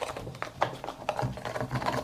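Felt-tip marker scribbling on a sneaker's upper: quick, irregular scratchy strokes.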